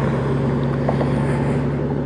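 2018 Honda Gold Wing's flat-six engine running at a steady highway cruise, a constant low hum under steady wind and road noise.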